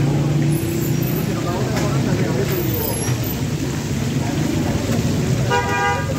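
Chapli kababs frying in a wide pan of hot fat, a steady sizzle over a low street hum. A vehicle horn sounds briefly near the end.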